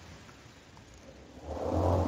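A pause in a man's talk: faint line hiss, then a soft breathy swell rising over the last half second, typical of an inhale into the microphone.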